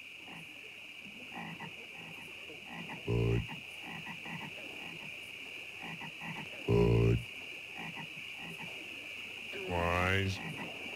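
Deep, gravelly croaks of the Budweiser frogs, one syllable each, calling out 'Bud', then 'Weis', then 'Er' about three and a half seconds apart; the last one rises in pitch near the end. Underneath runs a steady high-pitched night-swamp drone.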